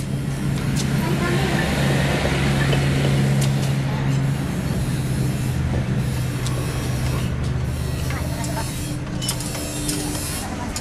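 A vehicle engine running steadily, its low hum shifting in pitch about four seconds in, with voices in the background.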